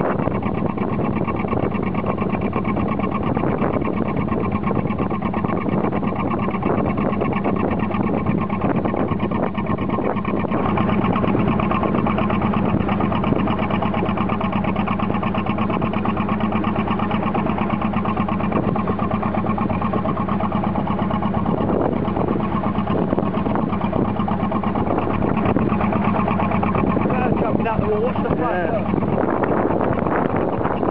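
Narrowboat engine running steadily under way, with a constant low hum and fast even pulsing, mixed with wind and water noise on choppy water.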